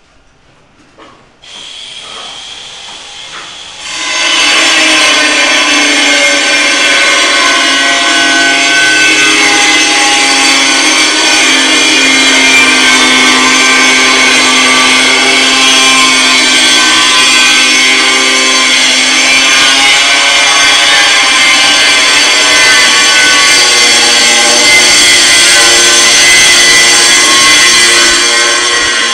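A power tool starts up loud about four seconds in and runs steadily under load, in the manner of a saw or cutter working material on a construction site.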